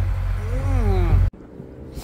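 Narrowboat diesel engine running with a steady low drone, a drawn-out voice sound rising and falling over it. The engine sound cuts off suddenly just over a second in, leaving only a faint low hum.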